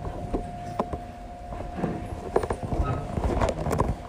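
Scattered clicks and knocks, a few stronger ones between about two and four seconds in, over a low rumble and a steady faint tone.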